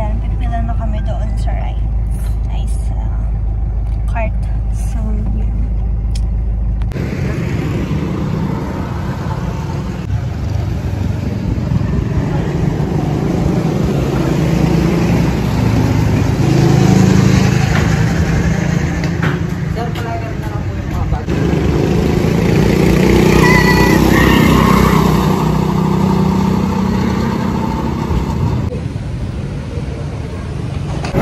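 For the first several seconds, a voice over a steady low rumble inside a car. Then, after a sudden change, the busy noise of an outdoor go-kart track: kart engines running, swelling louder twice, with people's voices mixed in.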